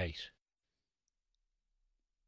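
A man's voice finishing a word, then near silence with two faint, brief clicks about a second in.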